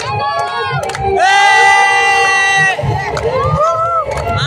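A Haryanvi dance song with a steady low beat, under crowd cheering and whoops. About a second in, a loud voice holds one long, steady high note for about a second and a half.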